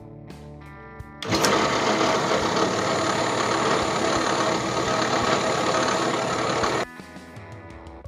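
A loud, steady scraping of steel on steel: a bolt head spinning in a drill-press chuck and pressed against a flat file, which is cutting it down. It starts about a second in and cuts off suddenly about a second before the end, with guitar music before and after.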